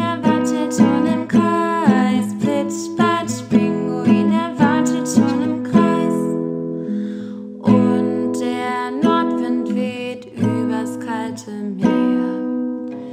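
A woman singing a German children's song to her own strummed classical acoustic guitar, the strums falling in a steady rhythm of about two a second.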